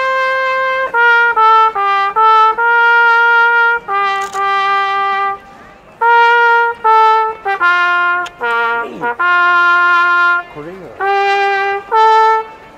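Solo trumpet playing a slow melody of long held notes that step up and down in pitch, with a short break about five seconds in.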